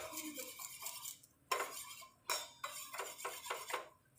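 Steel spoon scraping and clinking against the inside of a small stainless-steel pot while stirring a sugar and lemon-juice syrup. A run of scraping at first, then about half a dozen separate strokes, roughly three a second.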